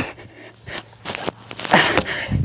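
Light thuds and shuffles of feet and hands on a gym floor during burpees, with a hard breath out near the end from the exertion.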